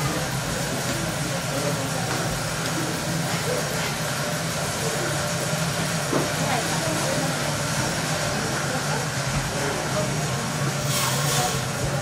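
A steady low hum under indistinct background voices.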